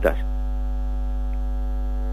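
Steady electrical hum on the line: a low mains drone with a higher, even buzzing tone and its overtones, holding unchanged with no one speaking.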